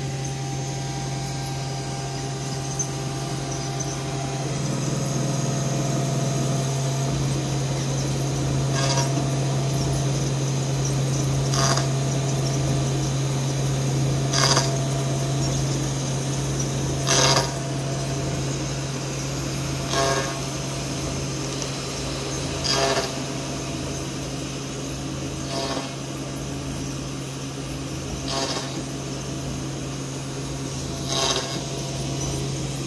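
Spindle of a Printrbot CNC machine running with a steady low hum while an end mill re-cuts a hole through stacked plywood. Short, sharp cutting bursts recur about every three seconds.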